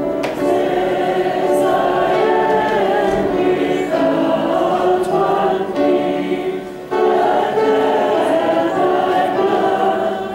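A group of voices singing a hymn together, with a brief break and a new phrase starting about seven seconds in.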